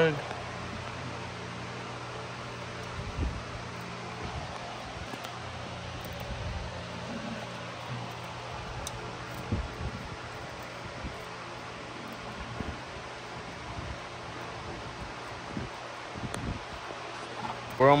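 Steady background hum with a few faint scattered clicks, knocks and rustles from hands working in a car's engine bay.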